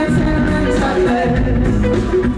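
A rock band playing live with a sung vocal line, heard from far back in an arena.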